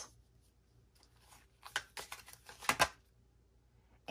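Tarot cards being handled and laid out: a quick run of soft card flicks and rustles between about one and three seconds in.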